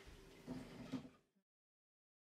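Faint, soft handling noises as a soft potato-dough roll is slid off a dough scraper onto a baking tray, two small bumps in the first second, then dead silence from an edit cut.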